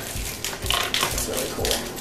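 Toy packaging being handled: a small cardboard blind box being opened and plastic wrappers crinkling, heard as irregular small clicks and rustles.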